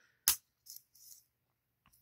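Victorinox Adventurer pocket knife's blade snapping shut into its red handle: one sharp metallic click about a quarter second in, followed by a couple of much fainter ticks.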